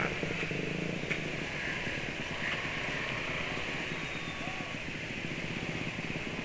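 Yamaha automatic scooter running at low speed in stop-and-go traffic. Its engine hum and the surrounding motorbike traffic blend into a steady hiss.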